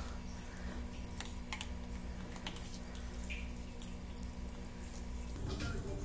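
Quiet background with a steady low electrical hum and a few faint, scattered clicks; the background changes abruptly near the end.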